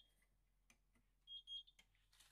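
Electric oven beeping as it is switched off: a quick run of three short, high beeps about halfway through, between two faint clicks from the control knob.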